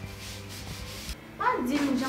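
A faint rubbing sound. About one and a half seconds in, a woman's voice breaks in with a drawn-out 'ah' whose pitch slides up and down.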